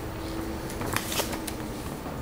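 Handling noise in a pause between speech: soft rustling and a few light clicks about a second in, over a faint steady hum.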